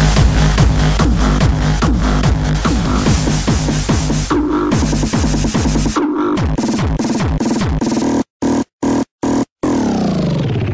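Early hardstyle DJ mix: a hard kick drum in a steady four-to-the-floor pulse with heavy bass, which thins out about six seconds in as the mix passes into the next track. Near the end the music is chopped into short stutters by four abrupt cuts to silence.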